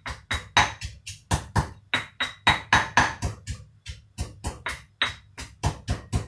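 Pestle pounding in a stone mortar, a steady run of sharp knocks about four a second, some with a brief high ring.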